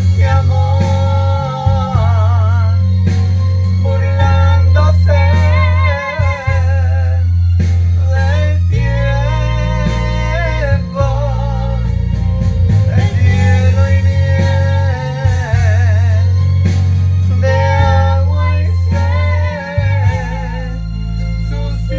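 A romantic ballad sung with a wavering vibrato in phrases a few seconds long, over guitar and long-held deep bass notes.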